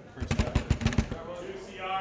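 A quick run of about seven heavy thumps in the first second, followed by a man's voice starting up near the end.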